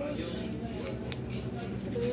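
Plastic bags of flour and sugar rustling and crinkling as they are handled and packed into a woven shopping bag.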